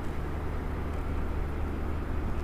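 Steady low hum with a light hiss: room background noise, with no distinct event.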